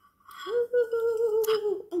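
A woman humming one long, high "mmm", held at a steady pitch for about a second and a half before breaking off, with a short click near the end.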